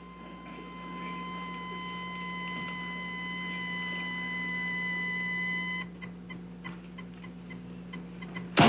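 A steady electronic beep tone over a low hum, growing slightly louder, then cutting off suddenly about six seconds in. Faint regular ticks follow, about three a second.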